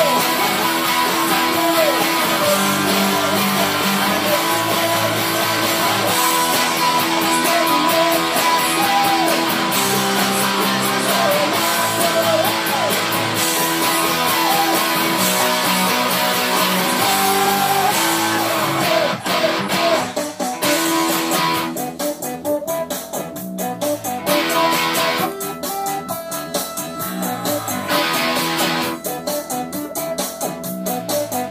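Fender electric guitar playing pop-punk chord riffs over music. It plays full and continuous at first, then changes about twenty seconds in to choppy, stop-start chord stabs.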